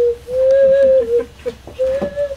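Small ceramic ocarina played with clear, nearly pure notes at about one pitch: a note held for about a second, then two short toots and another note near the end.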